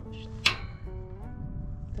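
Guitar music in the background, and about half a second in a single sharp click from the piezo igniter of a Mr. Heater Buddy portable propane heater as its control knob is pressed down to light the pilot.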